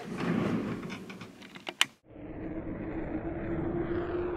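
Handling noise of a camera being reached for, rustling with a few sharp clicks. About halfway through it cuts off, and an animation sound effect begins: a steady low rumble with a held droning tone.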